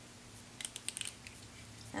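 A few light metallic clicks, bunched from about half a second to just past a second in, as a 3/8-inch tool is fitted onto the pivot screw of a pair of hair shears to take them apart.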